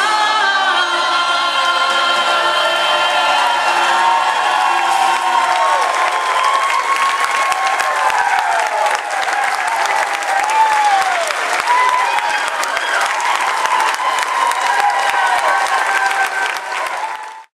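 A large group of campers singing the last held chord of a song with accompaniment, which ends about five or six seconds in. Applause with whoops and cheering voices then takes over and keeps going.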